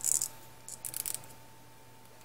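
Small folded paper origami pieces being handled with the fingers: two short rustles, one right at the start and one about a second in.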